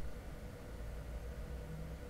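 Quiet room tone: a low steady hum with faint hiss and no distinct events.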